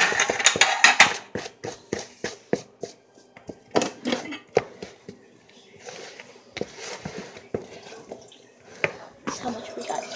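A utensil knocking and clinking against a mixing bowl while muffin batter is mixed: quick knocks for the first few seconds, then slower, scattered ones.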